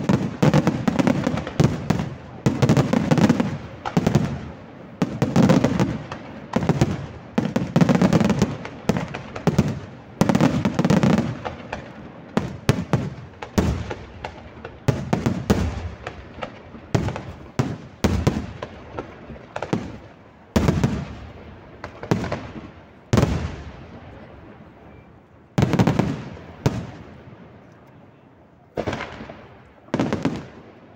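Fireworks display: aerial shells bursting in a dense, rapid barrage for about the first twelve seconds, then thinning to single bursts a couple of seconds apart, each followed by a fading rumble.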